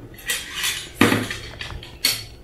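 Metal cutlery scraping and clinking on an empty ceramic plate as it is handled, with one sharp clack about a second in.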